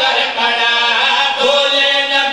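Several men's voices chanting together in a continuous melodic refrain, amplified through microphones.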